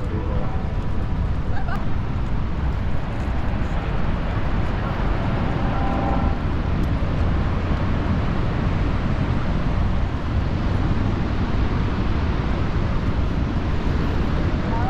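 Steady low rumbling noise with the chatter of passing people.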